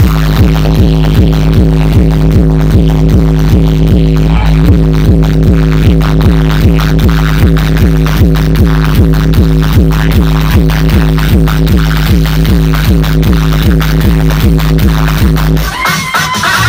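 Loud DJ music played through a large street speaker stack: a heavy, sustained bass drone under a fast, evenly repeating pattern of about five short strokes a second.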